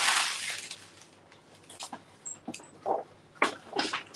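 A hand and forearm sweeping across a sheet of paper on a tabletop, a loud swish right at the start, then a few short crinkles and rustles of paper sheets being picked up and handled near the end.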